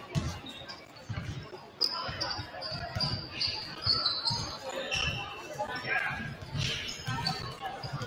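Several basketballs bouncing on a hardwood gym floor, an irregular patter of thuds several times a second as players dribble and shoot, with voices in the background.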